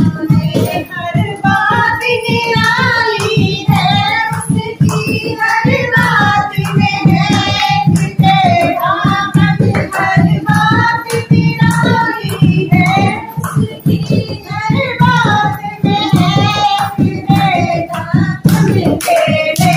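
A high female voice singing a song over a fast, steady drum beat, with hand clapping keeping time.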